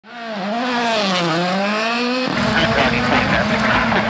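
Ford Puma Rally1 rally car's turbocharged four-cylinder engine held at raised revs at the stage start, its pitch rising and falling. About two seconds in the sound changes abruptly to a rougher, closer in-car sound of the engine still running.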